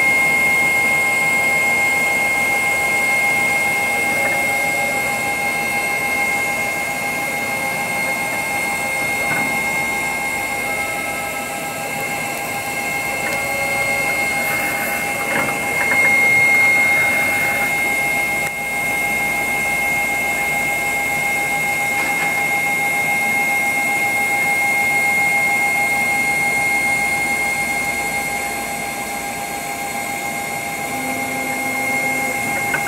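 Selective soldering machine running, a steady machine hum with a constant high-pitched whine, while its solder nozzle works along a circuit board's through-hole pins.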